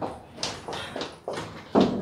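Footsteps on a hard floor, a quick run of sharp knocks about three a second, mixed with handling noise from a phone camera, as someone steps out of a lift.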